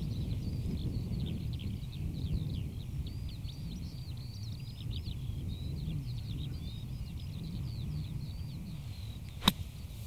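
Wind rumbling on the microphone and a bird singing steadily, then near the end a single sharp strike as a golf club splashes through bunker sand on a bunker shot.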